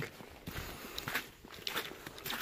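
Footsteps of a hiker in boots on a wet, slushy log walkway: a run of soft, irregular steps.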